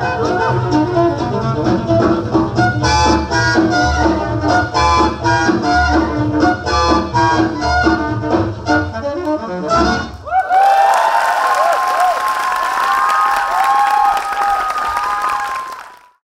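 Swing music plays with a strong beat and stops about ten seconds in. An audience then breaks into steady applause and cheering, which fades out at the end.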